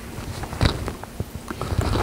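Footsteps on a soft, muddy clearcut track littered with branches, with a few sharp, irregular cracks and crunches of twigs and debris underfoot.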